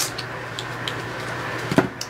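A few light clicks and taps from handling a small plastic product bottle, over a steady low hum of room noise.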